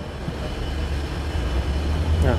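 A steady low rumble with an even hiss above it, and no distinct click or knock.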